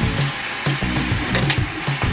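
Tap water running steadily into a sink basin while a makeup brush is rinsed under the stream and its bristles squeezed and pressed out.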